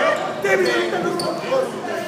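Basketball bouncing on a hardwood gym floor during play, with players' voices calling out, in the echo of a large gym hall.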